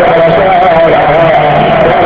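Loud devotional music: a wavering, continuous melody line over a steady low drone.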